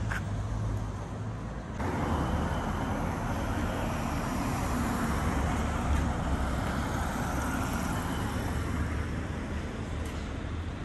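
Town-centre street traffic: cars driving past on the road, a steady road-noise wash that grows louder about two seconds in.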